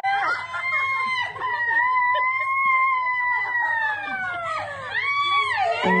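A person's long, high-pitched squeal, held for about five seconds with the pitch bending slowly up and then down. It breaks off and starts again near the end.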